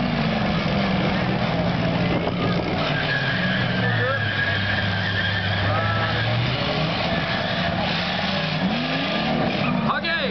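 Demolition-derby cars' V6 engines running and revving, one engine held at a steady drone for a few seconds in the middle, with crowd voices mixed in.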